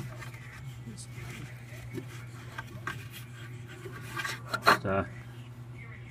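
Faint scraping and rubbing as fingers pick built-up lint off the stopped metal fan of a commercial clothes dryer, over a steady low hum.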